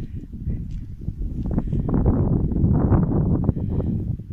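Wind buffeting the microphone in a heavy low rumble, with footsteps on wet, boggy ground.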